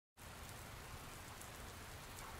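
Faint, steady recorded rain sound opening a song's intro, starting just after the beginning.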